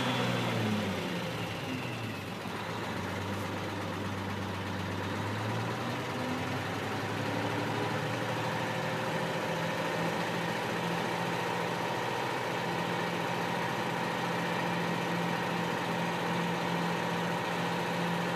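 The 6V92 Detroit two-stroke V6 diesel of a 1979 Kenworth W900 dump truck running while it drives the hydraulics that raise the dump bed. Its note rises about six seconds in and then holds steady.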